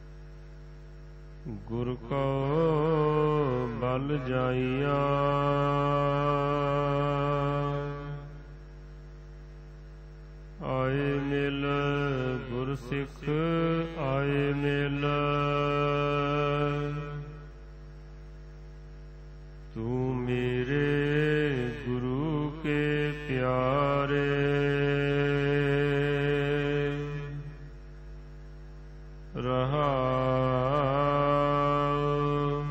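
Gurbani (Sikh scripture) being sung in three long, drawn-out phrases with a wavering, ornamented pitch, separated by short pauses. A steady low electrical hum runs underneath throughout.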